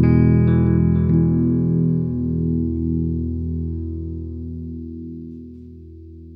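The song's final chord ringing out on guitar and slowly fading away.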